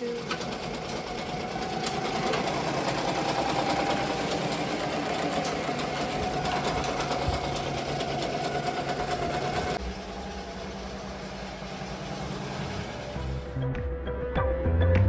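Multi-needle commercial embroidery machine stitching a design: rapid needle ticking over a steady hum. About ten seconds in, the sound cuts to something quieter.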